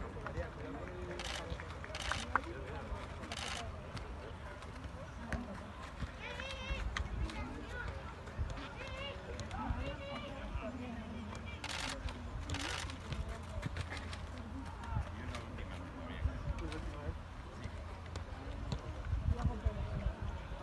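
Outdoor ambience: a steady low rumble of wind on the microphone and indistinct distant voices, with a few short hissing bursts.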